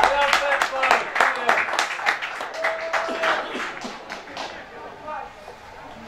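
Close hand clapping, about five claps a second, tapering off about four and a half seconds in, with a few voices calling out: spectators applauding a shot that went wide.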